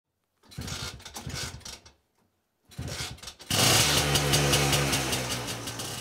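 Vintage motorcycle being kick-started: two short bursts of the engine turning over, then it catches about three and a half seconds in and keeps running steadily at idle.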